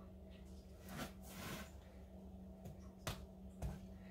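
Quiet handling sounds from a hand-spun painting turntable coming to a stop: a soft rustle about a second in, then a sharp click and a low thump near the end, over a steady low hum.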